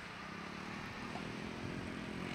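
A steady low motor hum over a faint noisy hiss, growing slightly louder toward the end.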